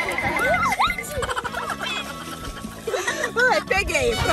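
A young girl squealing and laughing in high, swooping bursts, over background music.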